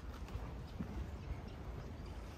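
Faint footsteps on concrete, a few irregular soft knocks, over a low wind rumble on the microphone.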